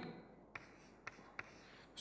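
Chalk on a chalkboard, writing a number: three faint, short taps and strokes, about half a second, one second and 1.4 seconds in.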